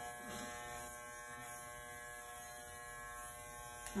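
Electric hair clippers running with a steady buzz as they cut a man's hair.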